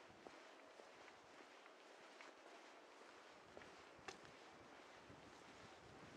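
Near silence: faint outdoor background hiss with a few soft clicks, the clearest about four seconds in.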